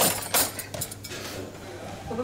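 Cutlery clinking and scraping on plates as food is served, with one sharp clatter about a third of a second in, then quieter clinks.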